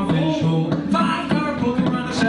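Live acoustic band music: several acoustic guitars strummed in a steady rhythm under a sung vocal line.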